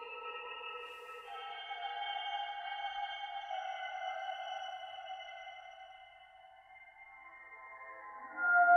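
Electroacoustic music of sustained, layered electronic tones, played through a rotating loudspeaker, with a short burst of hiss about a second in. The held tones slowly thin out and fade toward the end.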